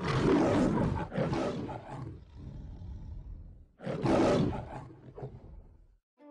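Lion roar sound effect, heard twice: a long roar at the start that fades out over about two seconds, then a shorter one about four seconds in.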